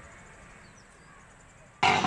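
Low, steady background with a few faint high chirps. Near the end it is cut off by a sudden loud burst of street noise.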